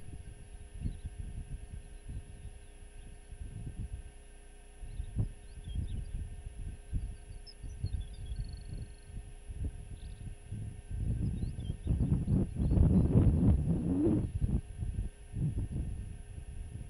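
Wind buffeting an outdoor microphone in irregular low rumbling gusts, with the strongest gust building about eleven seconds in and easing near the end. A few faint high chirps come through in the middle, over a thin steady high whine.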